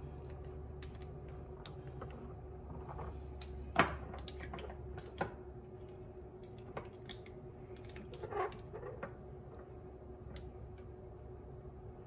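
Plastic debubbler stick clicking and scraping against the glass of mason jars packed with pineapple chunks and water, in scattered light knocks as it is worked down the sides of each jar to release air bubbles. A faint steady hum runs underneath.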